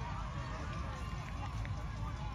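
Scattered distant voices of players and spectators calling out across an open field, over a steady low rumble.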